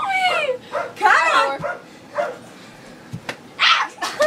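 Young girls' short, high-pitched yelps and whiny squeals, four in a row with quiet gaps between, the pitch bending and falling within each cry.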